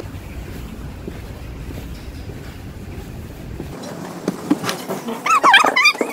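Outdoor street ambience: a steady low rumble of wind and traffic on the microphone. A little after five seconds in comes a short run of high, wavering, gliding sounds.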